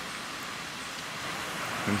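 Steady hiss of surf washing onto a sandy beach, with no distinct breaks.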